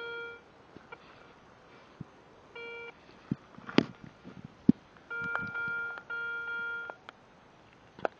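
Garrett ACE Euro metal detector beeping a steady tone over a buried target: a short beep at the start, another about two and a half seconds in, then two longer tones near the end. The signal is the twin of the one from the copper kopeck just dug. Two sharp clicks come about four seconds in.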